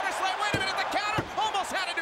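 Two thuds on a wrestling ring mat, about half a second and a little over a second in, fitting a referee's hand slapping the canvas as he counts a pinfall. Raised voices carry on throughout.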